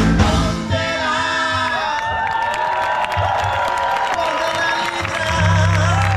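Live Afro-Cuban funk band: about a second in, the bass and drums drop out, leaving a long held note with the crowd cheering and whooping. The full band comes back in near the end.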